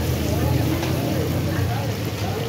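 Busy street-market din: a steady low rumble with people's voices talking in the background.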